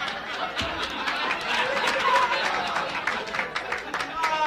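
Indistinct chatter of voices with music underneath.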